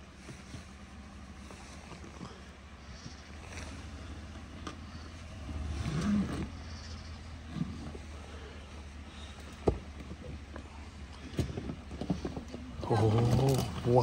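Chevrolet Silverado pickup crawling at low speed over rocks and brush on a narrow trail: a steady low engine hum, with a swell about six seconds in and a few sharp knocks from the tyres and underside meeting rock.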